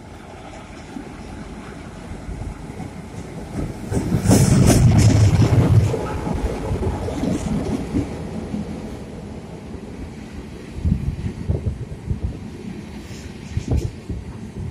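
Freight train passing close by at a station platform: a deep rumble builds to its loudest about four to six seconds in as the locomotives go by, then the freight cars roll past with a run of wheel clacks over the rail joints near the end.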